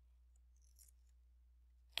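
Near silence: a faint steady low hum, with a couple of faint ticks near the middle.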